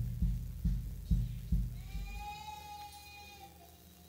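Church keyboard playing low notes about twice a second that fade away, then one long held higher note from about halfway through, dying out near the end.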